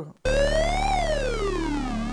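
Novation Circuit Mono Station analogue synth holding a note whose pitch the LFO sweeps slowly up and down, like a siren, over a steady low tone. The note comes in about a quarter second in, rises to a peak just before halfway, then glides back down and starts to rise again at the end.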